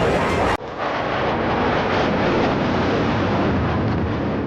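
Su-57 fighter jets flying past in formation: a steady jet engine rush, broken by an abrupt cut about half a second in.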